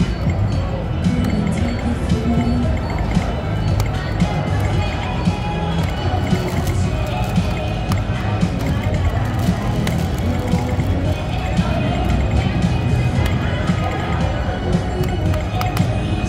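Casino-floor background music with a steady low beat and the murmur of other people's voices, with short electronic blips from a video poker machine now and then as hands are dealt.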